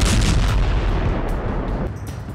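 A heavy weapon blast: a loud roar with a deep rumble and hiss that slowly fades over about two seconds.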